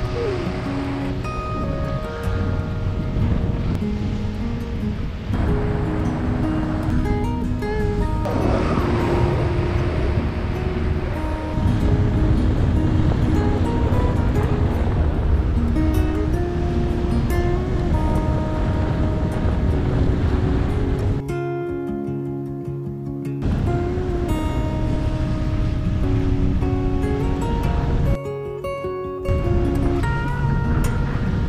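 Fingerstyle acoustic guitar music over a steady rushing noise, which drops away twice for a second or two in the second half.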